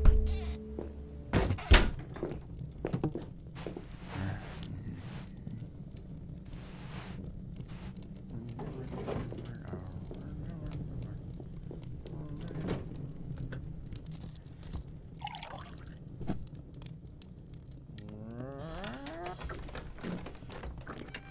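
Cartoon sound effects: two loud thuds near the start as a heavy wooden door shuts, then many small knocks and crackles over a low steady rumble, like a fire in a hearth. Soft music plays, and a drawn-out sound rises in pitch near the end.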